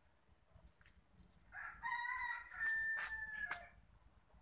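A rooster crows once, a single call of about two seconds that starts around the middle and ends on a higher held note.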